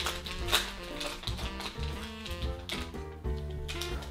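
Plastic film wrapper of a snack bar crinkling in short sharp bursts as it is peeled open and the bar pulled out, over instrumental background music.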